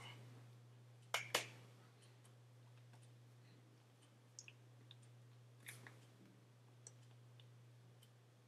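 Near silence over a steady low electrical hum, broken by two sharp clicks in quick succession about a second in and a few fainter ticks later.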